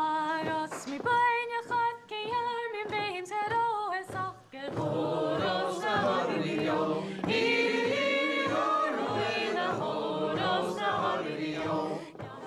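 Scottish Gaelic milling (waulking) song sung unaccompanied: a single voice sings a line, then a group of voices joins in on the chorus about four and a half seconds in.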